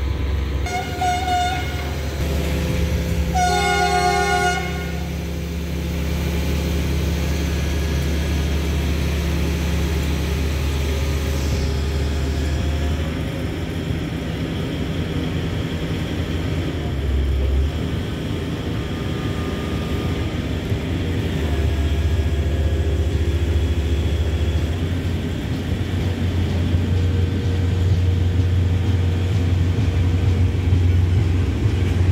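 Horn of a rail-mounted crane maintenance vehicle hauling rails, sounding two blasts: a short one about a second in and a longer one a few seconds in. Its engine then runs steadily underneath, growing louder near the end as the vehicle approaches.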